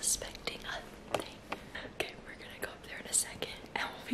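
A woman whispering close to the microphone, in short breathy phrases.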